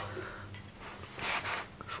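A few short, faint scrapes and rustles of a steel block being handled in a vise, with a faint steady hum underneath.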